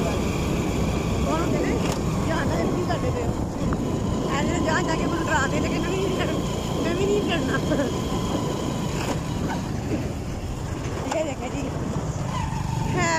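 Motorcycle riding along a road: steady engine and road noise with wind buffeting the microphone.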